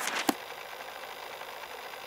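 Two sharp mechanical clicks about a third of a second apart, then a steady whirring hiss.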